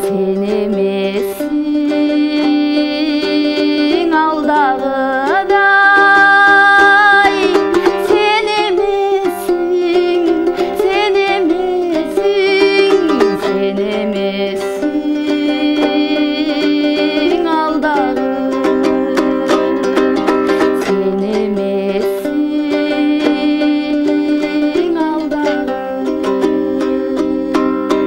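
A woman singing a Kyrgyz song to her own komuz, a three-stringed long-necked lute, strummed in a quick, steady rhythm throughout. Her sung lines waver in pitch and come and go over the strumming.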